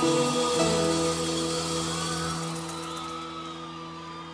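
A live band holding the final chord at the end of a song, the sustained notes slowly fading out.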